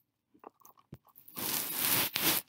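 A short click a little before one second in, then from about one and a half seconds a loud, rough scraping, crunching noise.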